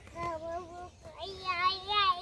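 Inflated rubber balloons squealing as air is let out through their stretched necks: a long, slightly wavering note in the first second, then a higher one starting a little past halfway.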